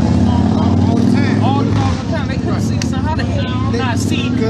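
A motor vehicle engine running close by: a loud, steady low hum that eases a little about halfway through, with men's voices talking over it.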